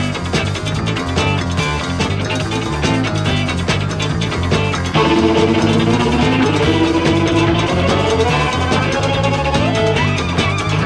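Fast country-rock instrumental break with electric guitar, bass and drums in a driving groove. About halfway through, long held fiddle notes come in over the band.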